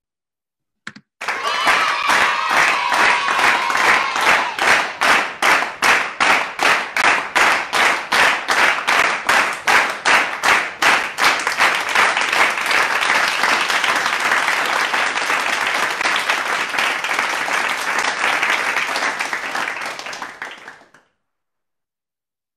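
Recorded applause sound effect. It starts with rhythmic clapping in unison at about three claps a second, then turns into continuous crowd applause that fades out near the end.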